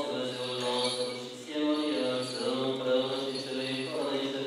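Male Orthodox clergy chanting a memorial service (parastas), sung in held notes that change pitch every half second to a second.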